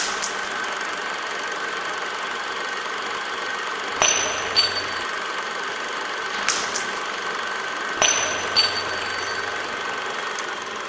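Spent brass pistol cartridge casing dropping onto a hard floor: four sharp metallic clinks with a high ring, each followed by a lighter bounce a fraction of a second later. A steady high-pitched tone and hiss run underneath.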